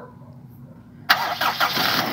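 Gasoline engine of a Toyota Revo cranking on a homemade LiPo battery jump starter. It starts suddenly about a second in and keeps running: it catches on the first try, which shows the LiPo pack can start the car.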